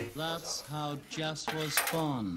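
Knife clicking against a cutting board while a small calamansi is sliced, under a short run of four repeated pitched notes that end in a falling slide.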